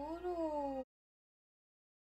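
A drawn-out pitched cry whose pitch slowly wavers up and down, cut off abruptly under a second in; the sound then drops to dead silence.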